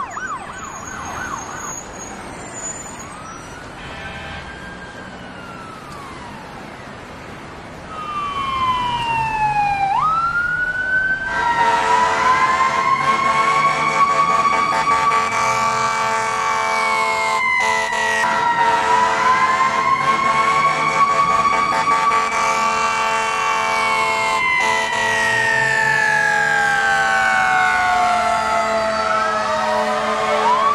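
Emergency vehicle sirens. A fast yelping siren at the start gives way to faint wails. From about eight seconds in, a louder wailing siren builds and slowly rises and falls over a steady hum.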